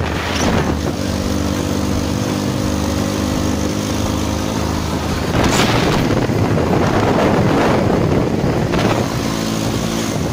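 A motorcycle engine runs at a steady speed under heavy wind rush on the microphone of a phone carried on the moving bike. About halfway through, the wind grows louder and covers the engine tone, which comes back near the end.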